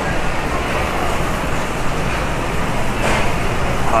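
Steady rushing background noise of a large store interior, with a brief rustle about three seconds in.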